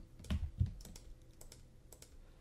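A few faint, scattered clicks from a computer keyboard and mouse, keys and button pressed while a straight brush stroke is painted in Photoshop.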